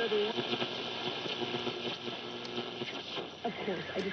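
Philco Model 75 tube radio playing an AM broadcast through its electromagnetic speaker: a broadcast voice comes and goes over a steady hiss of static, with no hum.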